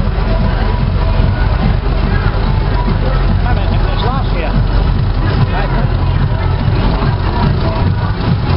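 Vintage tractor's engine running as the tractor drives slowly past at close range, a steady low rumble, with voices and music from the crowd around it.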